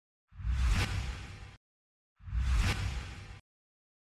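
Two whoosh transition sound effects, each about a second long, with a heavy low rumble under the rush. Each swells quickly and then fades; the second comes about two seconds in.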